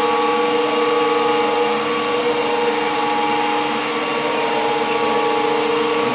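Chiller plant room machinery running steadily after sequenced start-up: pumps and chillers giving a constant noisy hum with several held tones.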